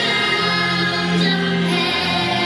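A Christmas song with a choir singing, playing steadily.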